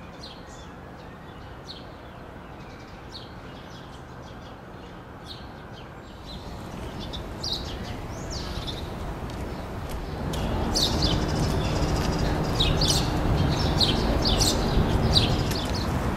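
Small birds chirping again and again over city street noise. The traffic rumble swells from about six seconds in and is louder from about ten seconds, with a low engine hum under it.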